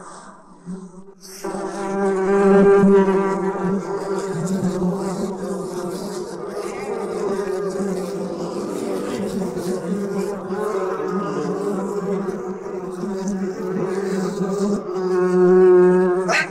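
A steady, buzzing drone from the drama's sound design begins about a second and a half in and holds to the end. It carries a low hum with higher overtones above it, and these waver now and then.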